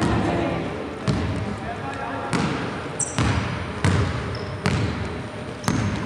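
Basketball being dribbled on a hardwood gym floor, about seven irregularly spaced bounces, with a few short high squeaks of sneakers on the court.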